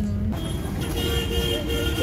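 Street traffic rumble with a vehicle horn held steadily for about a second and a half.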